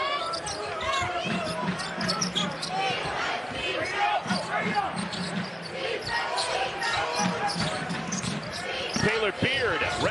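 Basketball dribbled on a hardwood arena court during live play, with the arena's crowd voices and short squeaks mixed in.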